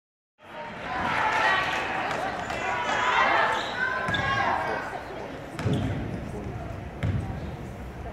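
Crowd voices in a gymnasium, then a basketball bounced twice on the hardwood floor, about a second and a half apart, each bounce echoing in the hall.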